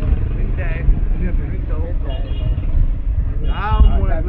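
Indistinct voices of several people close by, talking and calling out over a steady low rumble, with one louder voice rising near the end.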